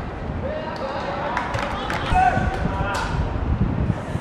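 Voices shouting across an outdoor football pitch during play, with a few sharp knocks in the middle, over low wind-like rumble on the microphone.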